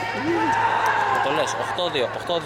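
Mostly speech: spectators talking near the microphone in a large sports hall, over a steady low hum.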